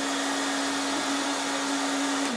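Cleanmaxx shirt-ironer's hot-air blower running, inflating the ironing dummy's cover: a steady rush of air with a constant hum.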